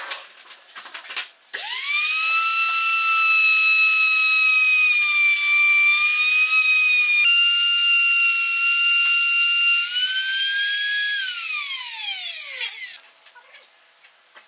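Compact trim router, a handheld palm router, switched on and spinning up to a high, steady whine while its bit cuts into a slice of log. Near the end it is switched off and winds down, its pitch falling, and it stops. A few knocks of handling come before it starts.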